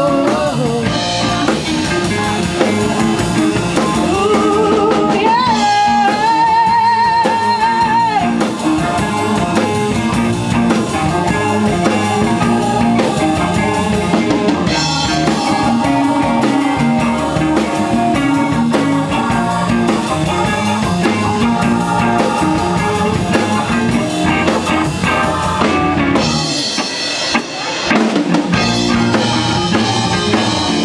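Live band playing: drum kit, electric guitars, bass and keyboard together. Near the end the low end drops out for a couple of seconds before the full band comes back in.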